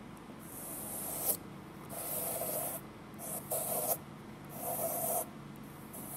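Compass pencil lead scratching across paper as the compass is swung round to draw a circle, in four separate strokes.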